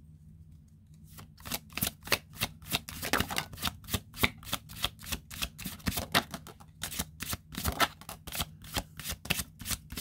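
A deck of tarot cards being shuffled by hand in an overhand shuffle. It starts about a second in as a quick, uneven run of card clicks and slaps, several a second, that keeps going to the end.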